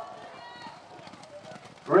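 Faint hoofbeats of polo ponies galloping on grass.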